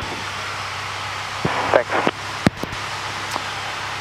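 Steady drone of a Cessna 172G's engine and propeller inside the cabin, running at reduced power for the descent with carburettor heat on. A few brief faint voice fragments come through about a second and a half in, and there is a single sharp click about two and a half seconds in.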